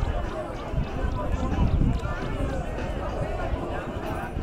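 Indistinct voices of people around a rugby field chatting and calling, over an uneven low rumble of wind on the microphone.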